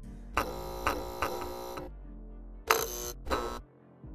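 Electric buzzing sound effects of an animated neon sign, over low background music: one buzz lasting over a second, then two short buzzes near the end.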